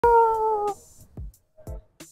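A woman's drawn-out cry of "nooo": one long call on a single, slightly falling pitch lasting under a second. It is followed by a couple of faint, brief sounds.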